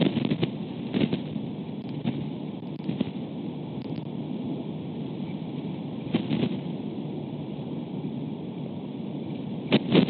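Wind blowing over an outdoor webcam microphone: a steady low rush of wind noise broken by sudden gusting thumps on the mic, at the start, about a second in, about six seconds in and again near the end.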